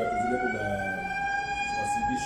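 A siren sounding one long tone that rises slowly in pitch and then holds steady and high.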